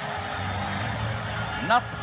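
Steady low rumble of ice hockey arena ambience under a television broadcast, with a male commentator starting to speak near the end.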